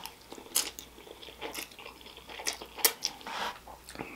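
Close-miked chewing of a mouthful of spaghetti in meat sauce: soft wet mouth sounds broken by several sharp smacks and clicks.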